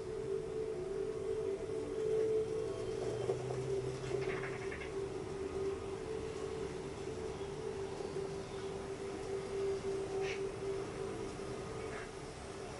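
A steady, slightly wavering held tone from a television's wildlife-documentary soundtrack, with a few faint brief higher sounds about four and ten seconds in.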